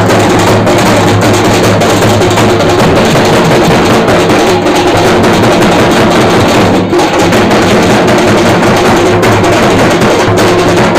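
Very loud, continuous drumming from a procession drum band, among them a large metal-shelled barrel drum beaten with sticks. The din dips briefly about seven seconds in.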